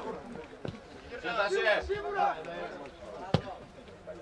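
Players' and onlookers' voices calling out during open play, then one sharp thud of a football being struck hard about three seconds in, the loudest sound here. A fainter knock comes earlier, under a second in.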